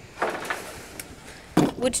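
A wooden timber plank being slid and lifted off a metal storage rack: a short scraping rub, then a single light knock about a second in.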